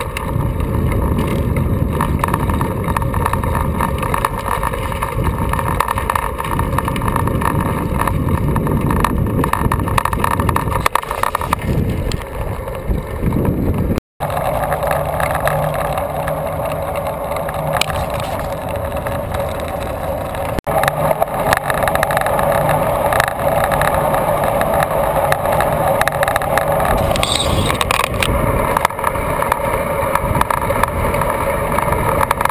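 Wind rushing over an action camera's microphone and road noise from a road bicycle riding along a highway. The audio breaks off briefly about halfway through, and after that a steady hum runs under the rushing noise.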